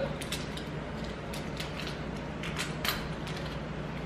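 Scattered light clicks and creaks from wooden snap mouse traps being handled and set by hand: the wire staple and spring-loaded bar being worked, with small taps of the trap bases on the table.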